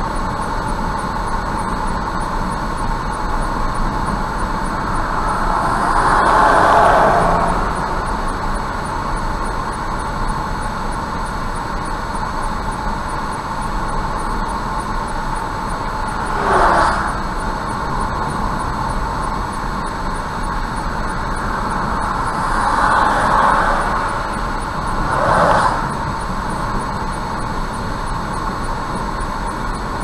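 Steady road and engine noise of a car driving at about 65 km/h on a highway, heard from inside the car. Oncoming vehicles pass in short swells of noise four times, one of them a lorry about 17 seconds in.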